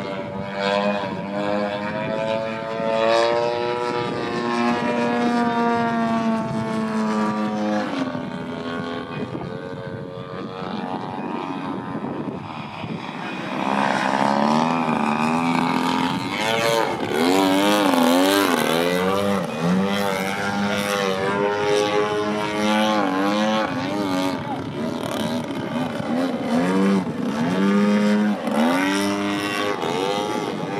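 Radio-controlled Extra 300 aerobatic model plane's engine and propeller, its pitch rising and falling constantly as the throttle is worked through aerobatic manoeuvres. It grows louder about halfway through and is loudest during a low pass.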